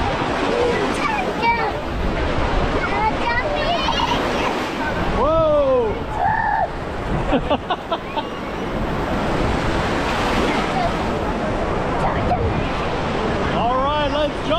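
Shallow ocean surf washing and breaking around waders, a steady rush of water close to the microphone. Children's voices call out over it, loudest in a high cry about five seconds in.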